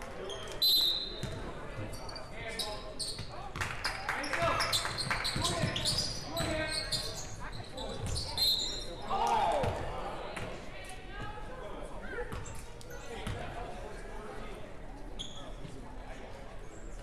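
Basketball game sounds in a gymnasium: a ball bouncing on the hardwood floor and players and spectators shouting, with short high-pitched sneaker squeaks about a second in and again a little past the middle. The voices are loudest through the middle.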